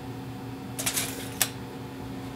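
Steel tape measure handled while measuring: a short rattle about a second in, then a single sharp click, over a steady low hum.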